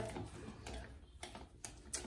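Faint handling of a leather crossbody strap with brass clip hardware as it is slung over the body: soft rustle with a few light clicks in the second half.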